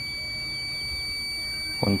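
A clamp multimeter's continuity beeper sounding one steady, high-pitched tone while its probes are shorted through a low resistance of about 1.4 ohms.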